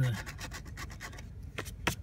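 Scratch-off lottery ticket being scraped with a small plastic tool: a run of quick, short scraping strokes rubbing the coating off the play area.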